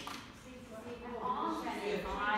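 A woman singing a slow phrase, her voice dipping a little after the start and then rising into a held note near the end.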